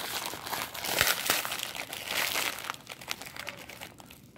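A foil wrapper crinkling and tearing as it is ripped open and peeled off a small plastic figurine, a dense run of crackles that is loudest about a second in and dies down near the end.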